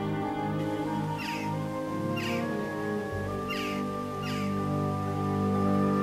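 Slow background music of held, sustained chords, with a bird giving four short calls about a second apart in the first part.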